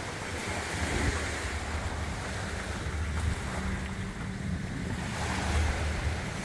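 A breeze buffeting the phone's microphone in uneven low rumbles, over the steady wash of the sea.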